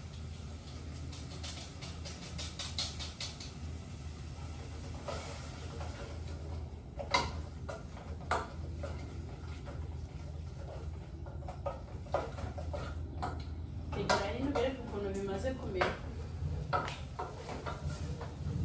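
Wooden spoon stirring in a metal saucepan, with a few sharp knocks of the spoon against the pot, over a steady low hum.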